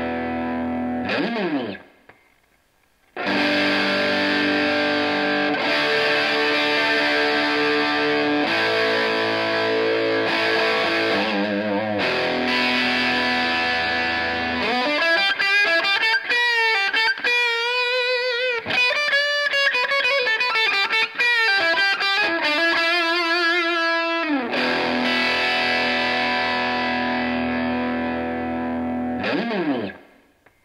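Overdriven electric guitar through an Xotic SL Drive pedal, here set with DIP switches 1–3 on: a held chord ends in a slide down the neck, and after a short gap come ringing distorted chords. In the middle is a single-note lead line with vibrato and bends, then a sustained chord, and near the end another slide down.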